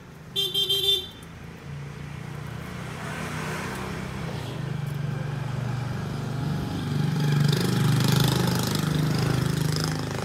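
A short vehicle-horn toot about half a second in, then a motor vehicle's engine running steadily, growing louder over the following seconds as a visitor's vehicle pulls up.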